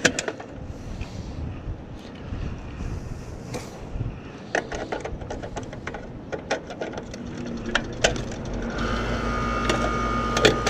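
Sheet-metal panel and cover of an AC condenser handled and closed up, a run of sharp clicks and knocks. Near the end the condenser unit starts up, a steady low hum with a thin steady whine over it.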